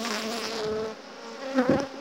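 Honeybees (Apis mellifera) buzzing around an open hive, a steady hum, with a short bump about one and a half seconds in.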